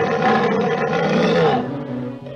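A cartoon lion roaring: one long, loud, rough roar that ends about one and a half seconds in.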